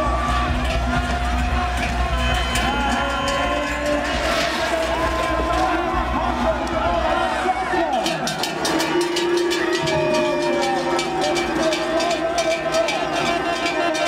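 Music with crowd cheering and shouting over it. A low rumble under the first half drops away about eight seconds in, and a quick clatter of clicks joins in the second half.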